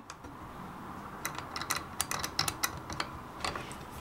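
Metal locking knob of a Veritas router plane being screwed tight by hand after the blade depth is set, giving a run of small sharp clicks. The clicks start about a second in, come thickly for a second and a half, and a few more follow near the end.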